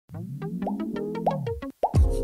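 Short electronic logo jingle: a rapid run of quick clicks over a synthesized tone that rises and then falls. It breaks off briefly and ends with a quick falling sweep.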